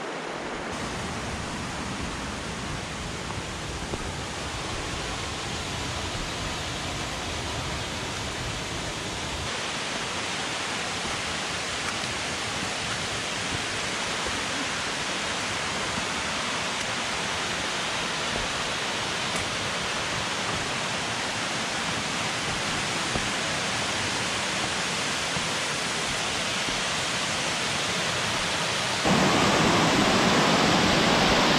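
Steady rush of flowing water, first the Chattooga River running over shallow rapids, then Spoonauger Falls. It grows gradually louder and jumps louder about a second before the end, when the falls are close.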